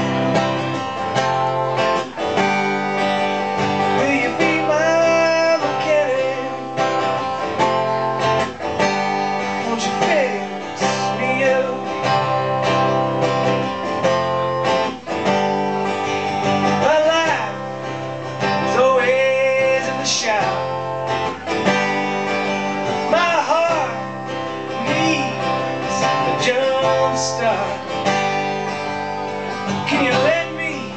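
Acoustic guitar strummed steadily, with a voice singing a melody over it in phrases.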